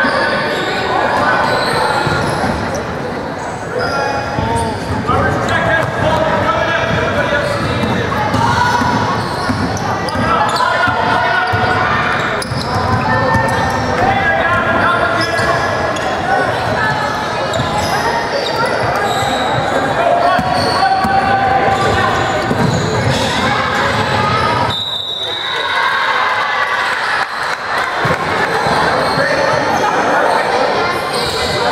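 Basketball game sounds in an echoing gym: a ball bouncing on the hardwood court, with players' and spectators' voices and calls going on throughout.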